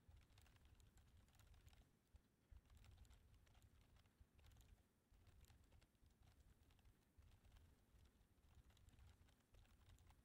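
Faint, rapid typing on a computer keyboard: a dense run of light key clicks.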